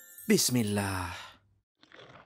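A character's voice letting out one drawn-out sigh of about a second, starting just after the opening and trailing off. Faint soft sounds follow near the end.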